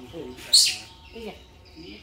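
A short, loud, high-pitched chirp falling in pitch about half a second in, over a quiet human voice.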